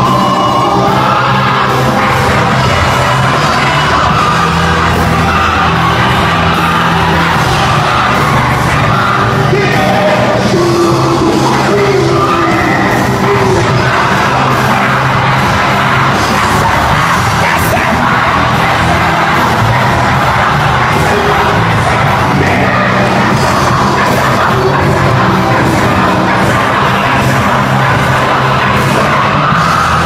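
Loud live worship music: an amplified band with a steady bass line and a singer on microphone, the sound dense and unbroken throughout.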